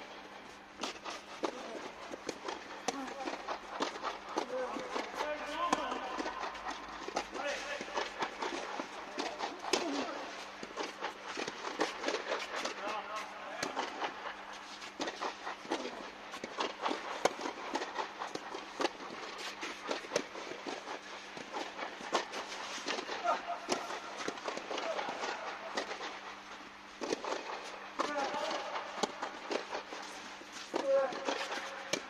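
Tennis rally on a clay court: repeated sharp pops of rackets striking the ball and the ball bouncing, at irregular intervals, with voices talking in the background and a steady low hum.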